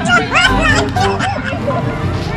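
Several young women's excited voices and laughter over background music with a steady bass line.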